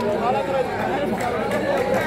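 Several voices talking over one another close to the microphone, the chatter of onlookers beside the pitch.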